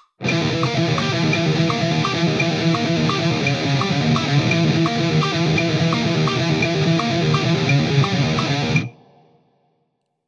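Heavily distorted electric guitar playing a thrash metal riff in steady eighth-note triplets in 3/4, with pull-offs on the low string, over a steady ticking click. The riff stops suddenly near the end and rings out briefly.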